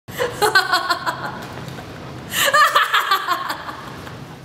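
A woman laughing in two bouts, the second starting about two and a half seconds in.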